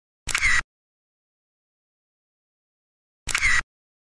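Camera shutter click sound effect, played twice about three seconds apart, the two clicks identical.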